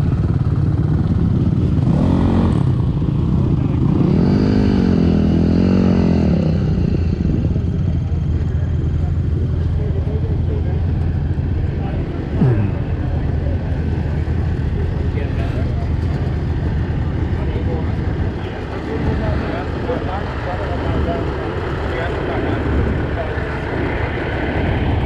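Dirt bike engine running steadily at idle and low speed under the rider, rising and falling in pitch for a couple of seconds about four seconds in.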